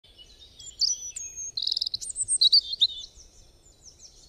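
Songbirds singing: high whistled chirps and a quick trill, fading out toward the end.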